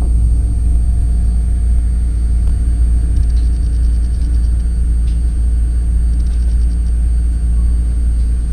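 Steady low rumble of a passenger train rolling slowly on the rails, heard from inside the coach. Two short runs of rapid high ticks come about three seconds in and again near the end.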